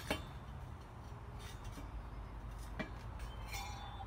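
Steel channel knocking and clinking against concrete as it is bent by hand. There is a sharp knock at the start, then a few fainter clinks, one with a brief metallic ring near the end.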